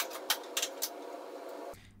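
Light clicks and rattles of hands handling cables inside an open desktop computer case, four or five sharp clicks over a steady faint hum; the sound cuts off abruptly near the end.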